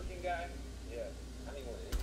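Faint speech from the video playing in the background, in short broken snatches over a steady low hum, then a single sharp click near the end.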